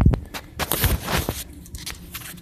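Handling noise from the camera being swung around: knocks and bumps at first, then a rough rubbing and rustling for about a second before it settles.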